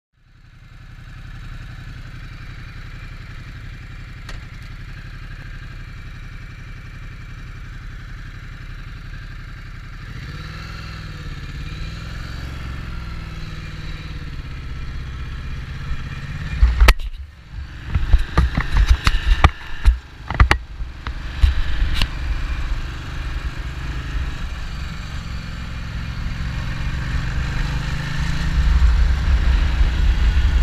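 2015 Ducati Multistrada's L-twin engine running under way, heard from a camera mounted on the bike. Its pitch rises and falls with the throttle from about a third of the way in, a cluster of sharp knocks comes just past halfway, and it grows louder near the end.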